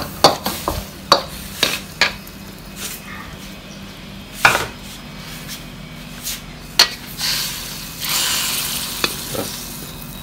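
Wooden spatula knocking and scraping against a steel wok as a pork, chilli and basil stir-fry is tossed: a quick run of sharp knocks in the first two seconds, then scattered single knocks and a longer scrape near the end as the food is scooped out of the wok.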